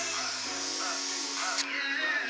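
Harbor Freight deluxe airbrush blowing a steady, sputtering hiss of air with its trigger pulled back, which is the position that should spray paint. The airbrush is not spraying as it should. Music and voices play in the background.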